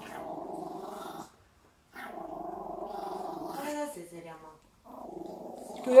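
A small Maltese dog growling in three long, low, rumbling stretches with short pauses between them, while held on its back and restrained: the defensive growl of a fearful dog.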